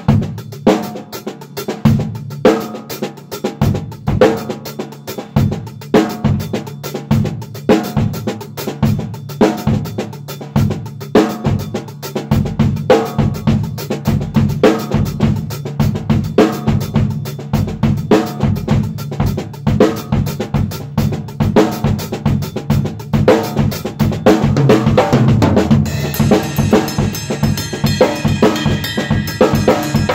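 Drum kit played in a 6/8 groove, kick, snare and cymbals, in the eastern style that leaves out the downbeat on one. About two-thirds of the way in, the playing gets louder and busier, with a steady cymbal wash near the end.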